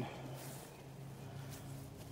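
Quiet background with a faint, steady low hum.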